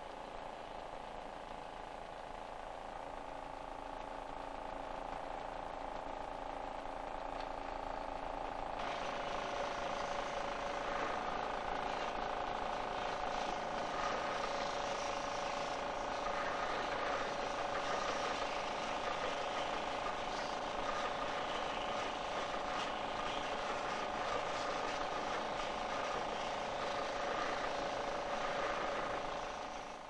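Belt-driven woodworking machinery running steadily with a hum of several held tones. About nine seconds in it gets louder and takes on a rougher, hissing edge, then it fades out at the end.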